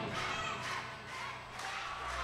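A brief quiet gap in a live worship band's music: the band has stopped, leaving a faint, fading tail of sound with some crowd noise underneath.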